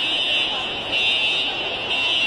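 Building fire alarm sounding a steady high buzzing tone that swells louder about once a second, raised as an emergency alert during an earthquake.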